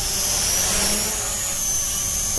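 Small GPS quadcopter's (SG900-S) motors and propellers giving a steady high-pitched whine over a hiss, the pitch dipping slightly in the second half, as the drone begins an automatic return-to-home.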